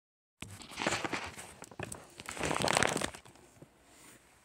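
Close rustling and crinkling handling noise from a phone's microphone as recording begins. It starts suddenly just after the opening, comes in two bouts with the second louder, and dies away about three seconds in.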